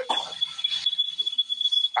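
A steady high-pitched electronic tone over an uneven hiss. It cuts off as speech comes back in.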